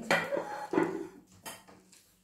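Glass vases being handled and set down on a hard surface: a sharp knock right at the start, then a few lighter clinks and clatters.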